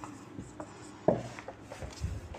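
Pen writing, short scratchy strokes with a louder knock about a second in.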